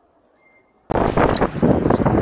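Near silence, then about a second in an abrupt cut to loud wind noise buffeting the microphone of an electric scooter ridden at road speed.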